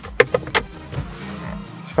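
Three quick sharp clicks from a Toyota Calya's glove compartment being handled, followed by a low steady hum.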